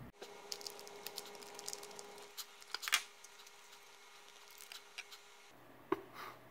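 Small clicks and ticks of plastic plug parts and wire being handled, with one sharper click about three seconds in, over a faint steady hum that stops shortly before the end.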